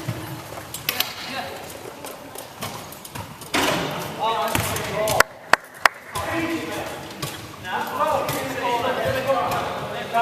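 Players shouting in a large, echoing sports hall, with sharp knocks of a basketball bouncing on the wooden court floor; two loud knocks come close together about halfway through.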